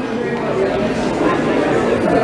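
Steady background chatter of many overlapping voices filling a busy restaurant dining room.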